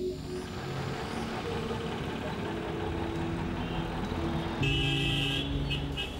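Street traffic noise, with a vehicle horn honking in short blasts near the end.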